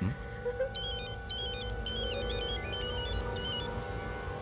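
A phone's electronic ringtone plays a beeping melody of quick stepped notes. It starts just under a second in and stops shortly before the end, over a sustained film-score drone.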